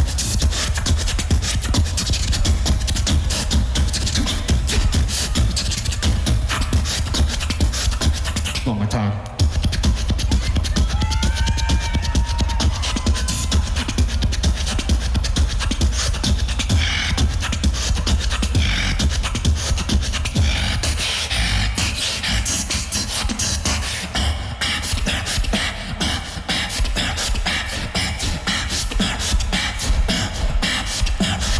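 Solo beatboxing: a dense run of mouth-made kick, snare and hi-hat sounds over a heavy bass. It breaks off briefly about nine seconds in, then a few pitched vocal lines bend in pitch over the beat.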